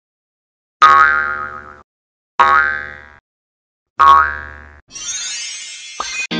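Three cartoon "boing" sound effects, each a springy twanging tone that fades away over about a second, about a second and a half apart. Near the end comes a bright shimmering swish.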